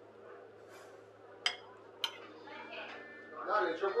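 Serving spoon and fork clinking against a baking tray and china plates as baked fish with tomato is dished out: two sharp clinks about half a second apart near the middle.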